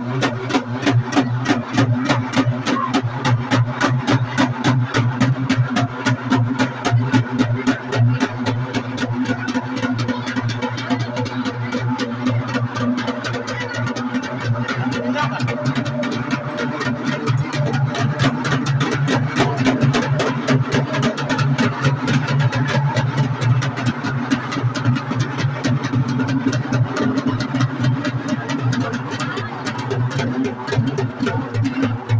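Festival music: fast, even drumming at about five beats a second over a low steady drone, with crowd voices mixed in.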